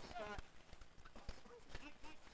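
Street hockey sticks clacking against the ball and the hard court in a goalmouth scramble: a quick, irregular run of sharp knocks. Players shout at the start and again past the middle.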